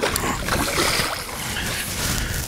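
A hooked carp splashing and churning the water at the surface close to the bank as it is played.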